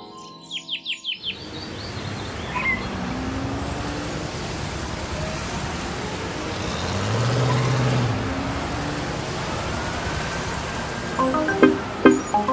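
Street ambience at the opening of a music video: a steady hiss of traffic noise, with a car engine swelling and fading about seven seconds in. There is a quick run of high chirps in the first second, and music with plucked notes starts near the end.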